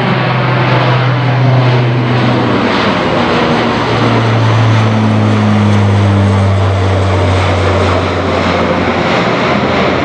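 Lockheed C-130 Hercules four-engine turboprop flying low overhead: a loud, deep propeller drone whose pitch drops as it passes overhead and moves away.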